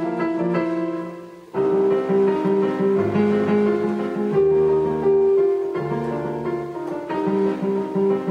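Electronic keyboard played on a piano voice: chords over a moving bass line. The notes die away about a second in, and the playing starts again half a second later.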